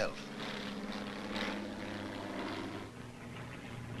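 Steady drone of an early propeller aeroplane's engine, a low even hum that dips slightly about three seconds in.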